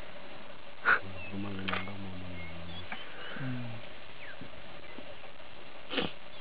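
A sharp knock about a second in, then a lion growling low and steady for about two seconds, followed by a shorter second growl.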